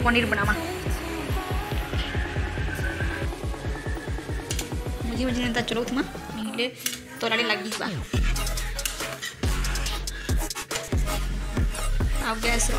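Background music with a steady beat and a singing voice, with a steel spoon faintly clinking and scraping in a steel kadai as cream and liquid are stirred.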